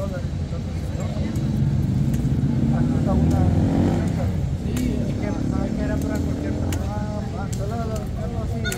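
Busy street ambience: passers-by talking indistinctly over the steady low hum of a motor vehicle's engine running close by, loudest a few seconds in.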